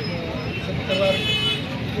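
A vehicle horn sounds briefly, a steady toot starting about a second in and lasting under a second, over a man talking.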